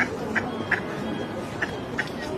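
Ducks calling: a run of short, sharp calls about three a second, pausing briefly partway through, over a background of softer calls.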